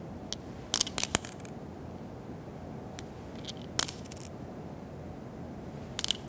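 Short sharp clicks and taps from a partly evacuated glass demonstration tube being turned over, with a dime inside dropping onto the tube's end. They come in small clusters about a second in and just before four seconds in, over a steady faint hiss.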